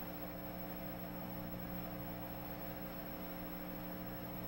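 Steady electrical mains hum, several constant tones over a faint hiss, with no other sound.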